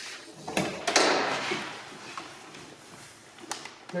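Land Rover Defender 90 side door being opened by hand: a short click, then a louder clunk about a second in as the latch releases and the door swings open, and another faint click near the end.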